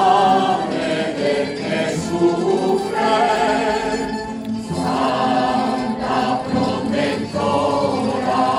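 Mixed choir singing a gozos, a devotional hymn, in sustained phrases with vibrato. There are short breaths between phrases about halfway through and again near the end.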